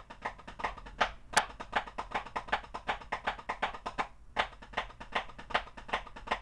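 Wooden drumsticks on a drum practice pad playing the Swiss Army triplet rudiment: a fast, even run of dry taps, about eight a second, in flam-led groups of three, with a brief break about four seconds in.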